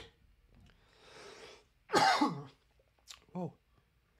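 A man coughing after something went down the wrong pipe: a long breathy sound about a second in, then one loud cough about two seconds in.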